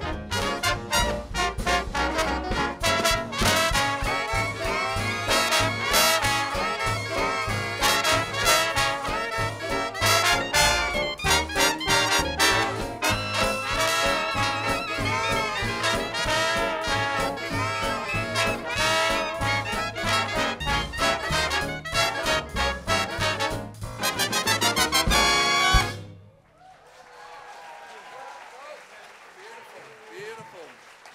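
Swing-era jazz big band playing, with trumpets and trombones to the fore over saxophones and a steady drum beat. It builds to a loud final chord that cuts off sharply about 26 seconds in, followed by audience applause.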